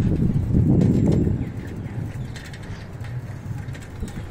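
Low rumble of a moving vehicle and wind on the microphone, loudest in the first second and a half and then easing, with birds chirping faintly in the background.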